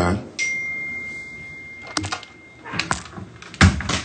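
A door shutting with a loud thud near the end, after a few lighter knocks and handling sounds. Earlier there is a steady high tone lasting about a second and a half.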